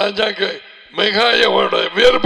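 A man speaking into a headset microphone, talking continuously with a short dip about halfway through; speech only.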